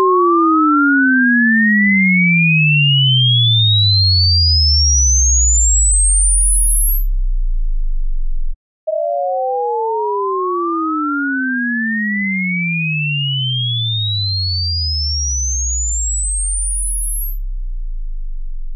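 Two pure sine tones start together at about 632 Hz and glide apart, one rising to the top of the hearing range and the other falling into the deep bass. This is a test sweep outward from 632 Hz, the logarithmic centre of human hearing. The pair stops about eight and a half seconds in and starts again from the centre a moment later.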